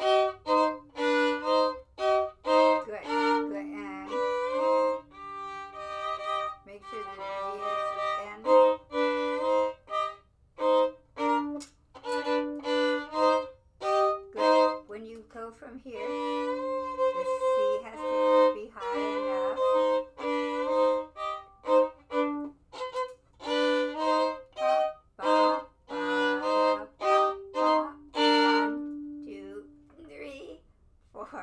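Violin played unaccompanied in short phrases of mostly separated notes, some notes held, with brief pauses between phrases. Two violinists take turns on the passage.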